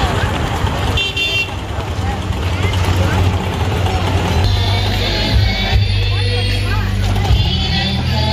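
Busy outdoor festival street: crowd chatter and passing motorbike traffic over a steady low hum, with a short high-pitched toot about a second in.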